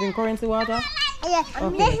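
Speech only: a young child talking, repeating "this is".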